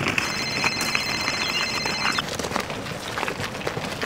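Mobile phone ringing: one high electronic ring tone lasting about two seconds.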